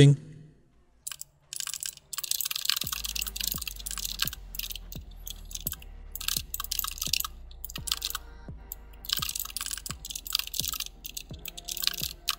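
Rapid computer keyboard typing, sped up, a dense run of clicks over background music with a steady beat of about two beats a second.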